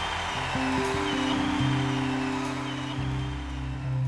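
Live band music: a long held low chord rings under a steady wash of noise as a rock song closes.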